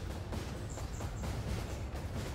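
Quiet, steady outdoor background noise with a few faint high chirps about a second in.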